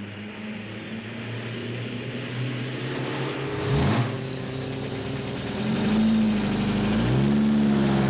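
Car engines running in the street: a car drives past about four seconds in, its engine note dropping sharply as it goes by. Near the end an engine picks up speed, its note rising, dipping briefly as at a gear change, and rising again.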